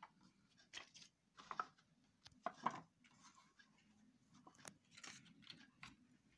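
Faint, scattered rustles and light taps of paper being handled: stiff paper cubes and a strip of paper moved and pressed on a wooden tabletop, about half a dozen short sounds.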